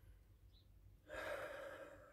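A man's audible sigh, a single breath pushed out through the mouth about a second in, lasting under a second and tailing off.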